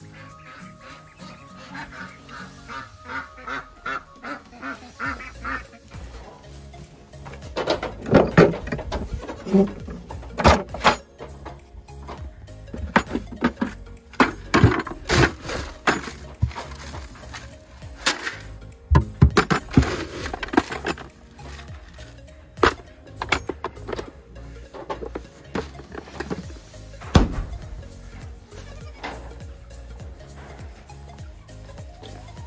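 Background music over ducks quacking. From about seven seconds in come repeated loud knocks and rustles of dry grain feed being scooped and poured into a bin.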